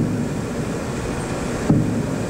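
Steady low rumble and hiss of an old interview recording's background, with no speech, broken by two brief sharp sounds, one at the very start and one near the end.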